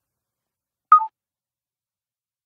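A short two-note electronic beep from a Samsung Galaxy S4, a higher tone dropping to a lower one, about a second in: the camera's tone marking the end of an Animated Photo capture.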